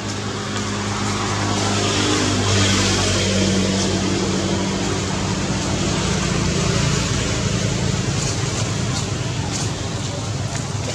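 A steady low droning hum over a constant hiss, growing a little louder about two to three seconds in.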